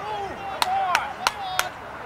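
Four sharp, evenly spaced claps, about three a second, from a spectator at the sideline, over voices calling out across the field.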